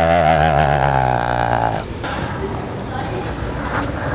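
A man's long, wavering vocal noise, a comic warbling yell made with his tongue out to put the batsman off, lasting until a little under two seconds in; after it the sound drops to a lower, noisy background.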